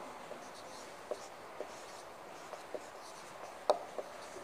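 Marker pen writing on a whiteboard: faint scratchy strokes with several short clicks, the loudest shortly before the end.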